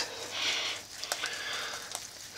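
A short sniff through the nose, lasting about half a second, followed by a faint click.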